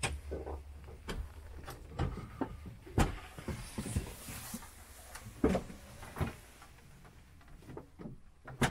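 Irregular knocks, clicks and bumps of someone moving about inside a cramped metal aircraft cockpit: footsteps on the floor and contact with the fittings. The loudest knock comes about three seconds in.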